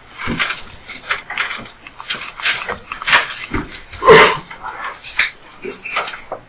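Papers, folders and files being handled and shuffled on a wooden counsel table, with scattered knocks and bumps and one louder short squeak-like sound about four seconds in.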